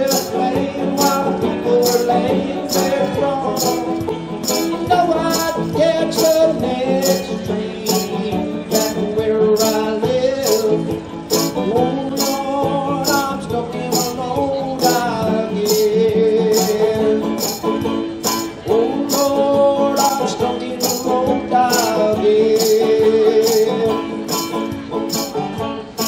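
Iida 235 banjo strummed with a thumb pick while a rack-held harmonica plays the melody, over a looped shaker-like percussion beat from a Boss RC-3 looper at about two hits a second.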